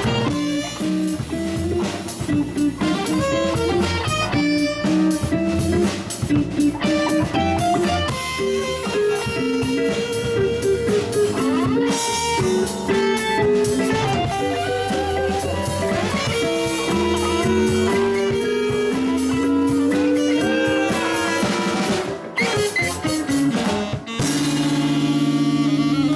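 A live instrumental band playing: electric guitar and drum kit over bass, with an alto saxophone. About two seconds before the end a long held note comes in.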